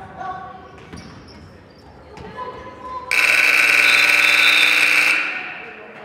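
Gym scoreboard buzzer: a loud, harsh, steady blare starting about three seconds in, held for about two seconds, then cut off, leaving a short echo in the hall. Before it, voices and a basketball bouncing on the hardwood.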